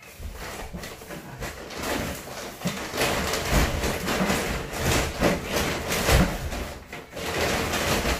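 Large woven-plastic storage bag rustling and scraping as it is shoved onto the top of a wooden wardrobe, with a couple of dull knocks.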